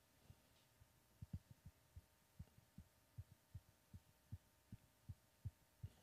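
Near silence with faint, low, soft thuds that begin about a second in and settle into an even beat of a little over two per second.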